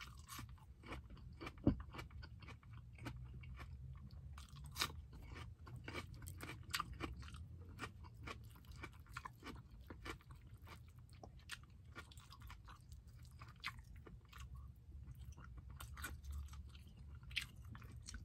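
Close-up mouth sounds of a person chewing a hand-eaten mouthful of grilled tilapia, rice and raw tomato-onion salad: faint, with many small wet clicks and soft crunches. A louder click comes about two seconds in, over a steady low hum.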